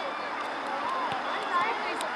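Indistinct voices of sideline spectators talking, with no clear words.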